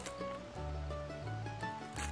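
Background music with plucked strings, over a faint crackle of dry bread being torn apart by hand, the dried-out texture wanted for stuffing.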